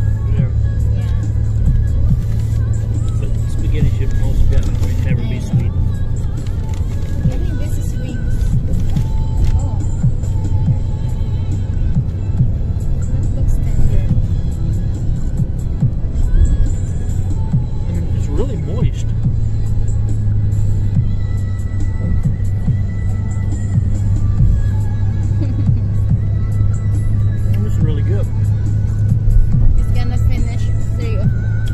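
Steady low drone of a bus engine and road noise heard inside the passenger cabin, with music playing over it.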